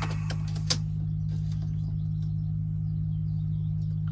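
A steady low mechanical hum with a fine regular pulse, and a couple of light clicks in the first second.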